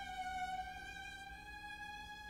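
A single held high violin note, quiet and steady with a slight waver in pitch, in an opera's chamber-orchestra accompaniment.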